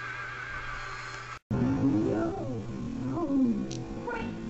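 An animal-like growling voice in a cartoon soundtrack, gliding up and down in pitch in two long swells, after a warbling high tone that cuts off suddenly about a second and a half in.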